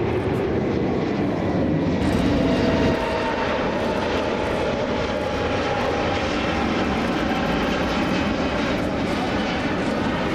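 Jet noise from an Airbus A380-800's four turbofan engines, a steady loud rush. About three seconds in the sound changes abruptly, and the rest is the airliner climbing out after takeoff, with a faint tone sliding down in pitch.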